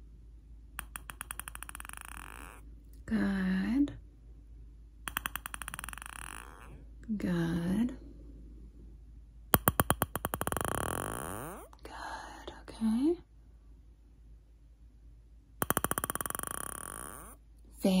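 A hearing-test series of four short ringing, rattling sounds, each a quick run of taps that fades out over one to two seconds, made one at a time with pauses between. Between them come three brief voiced sounds.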